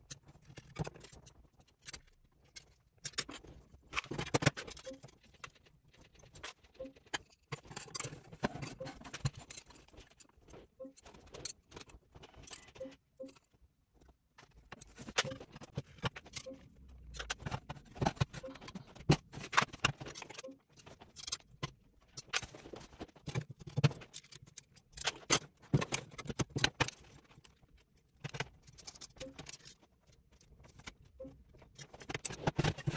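Aluminium 2020 extrusions of a 3D-printer frame being handled and fitted together by hand: irregular metallic clicks, clinks and knocks in clusters, with short pauses between.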